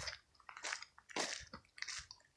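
Faint footsteps crunching on a dirt and leaf-litter path, several steps about half a second apart.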